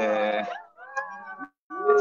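Men's voices howling like wolves: long, wavering, sliding howls, with a fresh and louder howl rising near the end.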